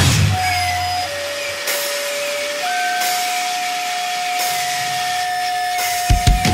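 Guitar amplifier feedback ringing on over hiss once the band stops. The low end dies away in the first second and a half, while a single steady whine drops in pitch about a second in and jumps back up about two and a half seconds in.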